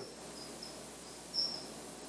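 A few short, faint, high-pitched chirps over a low hiss. The loudest comes about one and a half seconds in.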